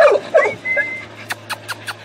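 A dog whining briefly in a thin, high tone, followed by a quick run of sharp clicks.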